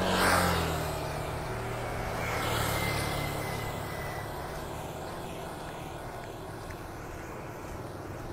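Small motorbike engines running as they pass and approach along a road, with the loudest pass swelling and fading in about the first second.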